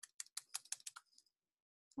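Faint computer keyboard typing: a quick run of about a dozen keystrokes within the first second.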